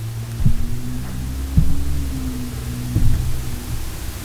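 A steady low hum, with three dull low thumps over about three seconds.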